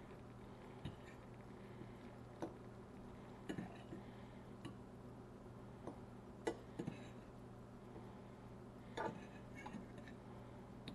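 A metal fork clicking and tapping against a ceramic-coated frying pan as fish chunks simmering in marinade are nudged and turned: about ten light, irregular clicks, over a faint steady hum.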